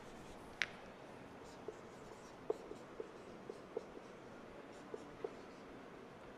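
Marker pen writing on a whiteboard: faint strokes with a handful of light, separate taps as the pen touches the board.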